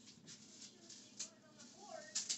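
Faint rustling and handling of yarn and a crocheted piece, with a light click about a second in.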